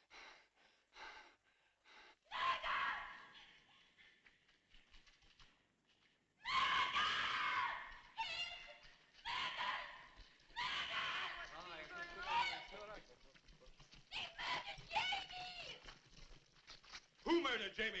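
Repeated shrill cries with a wavering pitch, loudest from about six to eight seconds in.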